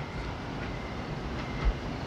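Steady rumbling background ambience in a film soundtrack, an even noise with no distinct events.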